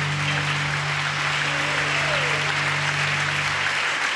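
Audience applauding, steady throughout, over a low steady hum; both cut off abruptly at the end.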